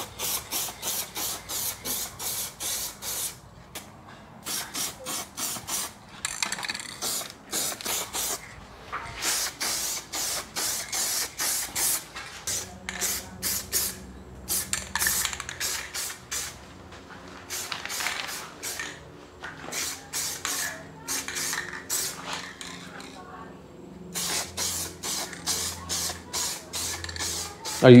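Aerosol rattle can of colour-matched base coat spraying a light first coat in many short hissing bursts, coming in quick clusters.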